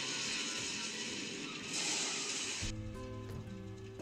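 Film sound effect of snow spraying up, a loud hiss that cuts off sharply about two-thirds of the way through. Music with held chords and a low bass note comes in at that moment.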